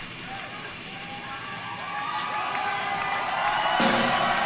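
Concert crowd cheering and shouting, growing steadily louder, with a wide surge of noise near the end.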